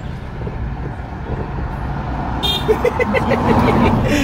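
Steady low rumble of car and road traffic heard from inside a car cabin. It grows louder in the last second and a half, with a run of short, quickly repeated pulsed tones.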